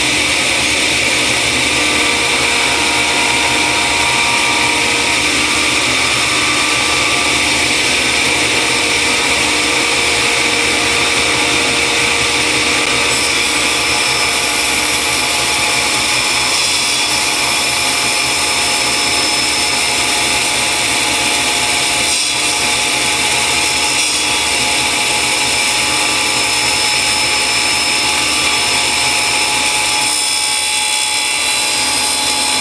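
Cabinet table saw running at full speed with a steady whine while a flat workpiece is pushed along the fence through the blade.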